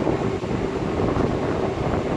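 Steady low rumble of a ship's engine and machinery while the ship manoeuvres, with a faint steady hum and wind buffeting the microphone.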